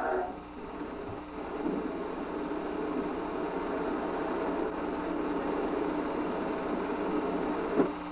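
A steady low mechanical hum with faint steady tones and no speech.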